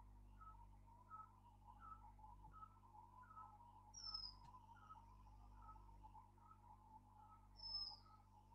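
Faint bird calls: a short note repeated steadily about every two-thirds of a second, with two brief high whistles falling in pitch, one midway and one near the end.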